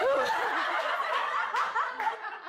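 Several women laughing at once in happy surprise, with a few short rising high cries about a second and a half in.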